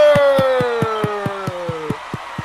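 A single held vocal note sliding slowly down in pitch over a fast, even beat of about six hits a second, ending just before the end. It plays as the segment's title sting.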